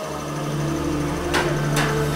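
Steady mechanical hum and low rumble of workshop machinery running, with two short sharp knocks in the second half.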